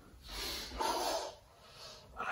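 A man breathing out hard, one noisy breath of about a second, as he pushes up from downward dog into a cobra stretch.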